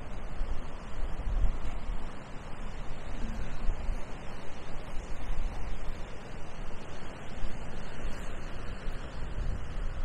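Wind blowing across the microphone: a low rush that rises and falls in gusts.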